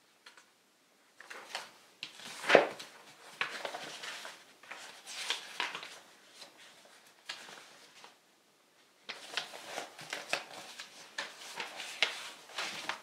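Paper pages rustling as sheets of notes are turned and leafed through by hand, in two stretches with a short pause near the middle; the loudest, sharpest rustle comes about two and a half seconds in.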